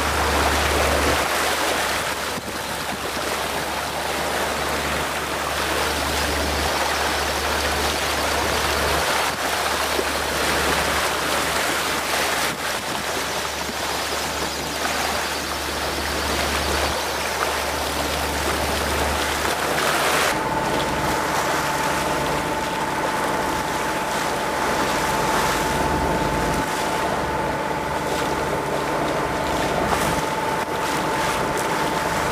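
Water rushing and splashing along a moving boat's hull, with wind. About two-thirds of the way through, the sound changes suddenly and a steady engine hum comes in under the water noise.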